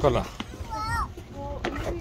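Young children's voices while playing, with one short high-pitched call about a second in.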